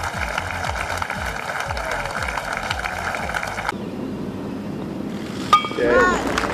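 Gallery applauding and cheering around a golf green. After a sudden cut about halfway through, a quieter stretch ends in one sharp click of a putter striking a golf ball.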